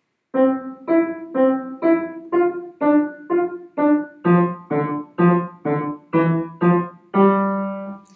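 Upright piano played staccato: about fifteen short, detached chords of thirds in both hands, roughly two a second, with the last chord held longer near the end.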